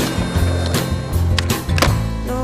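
Skateboard wheels rolling on concrete, with sharp clacks and pops from the board during tricks, heard over soft background music.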